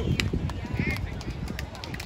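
Wind buffeting the microphone with a steady low rumble, over faint voices of people on the beach and a few scattered sharp clicks.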